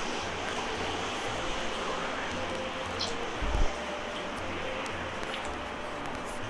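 Steady outdoor background noise, with a short high chirp about three seconds in and one low thump about half a second later.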